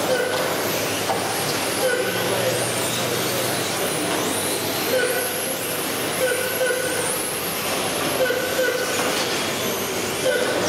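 Electric RC touring cars with 13.5-turn brushless motors racing round the track, their motors making high whines that rise and fall with the throttle over the steady hiss of tyres on carpet. Short steady tones sound every second or two over it.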